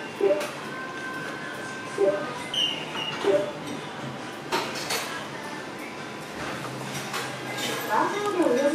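Busy restaurant room tone: background music and indistinct voices, with a few light clinks of chopsticks and tableware against a ceramic bowl.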